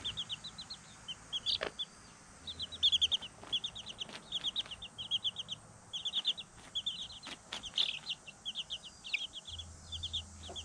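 Chicks peeping in rapid runs of short, high notes, several to a second, with brief pauses between runs.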